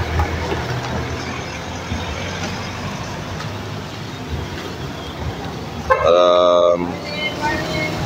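Road traffic passing steadily, with a single vehicle horn toot about six seconds in that lasts under a second and is the loudest sound.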